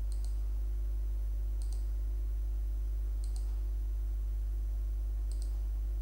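Computer mouse button clicks, four short double clicks (press and release) spread a second or two apart, as hole points are placed. A steady low hum underlies them throughout.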